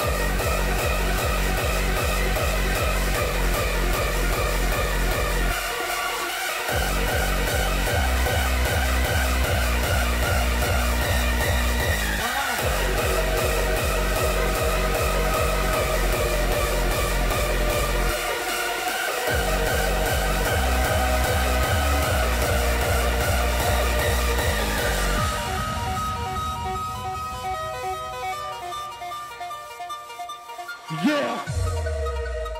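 Hardstyle dance music from a DJ set: a steady, pounding kick drum under sustained synth melody lines. The kick cuts out briefly a few times, then drops away over the last few seconds, leaving the synth melody on its own.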